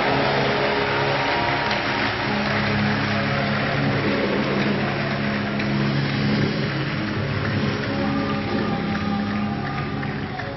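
A congregation clapping steadily, a dense wash of claps, over music holding sustained low notes.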